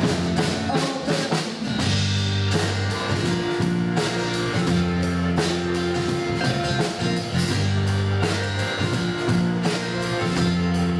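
Live band playing an instrumental passage of a pop-rock ballad: strummed acoustic guitar, electric bass holding long low notes, keyboard and drum kit, with no singing.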